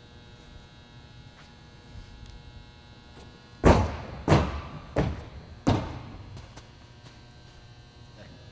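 An athlete's feet striking the runway in alternate-leg bounds from a standing start: four thuds about two-thirds of a second apart, starting about three and a half seconds in, with the first the heaviest.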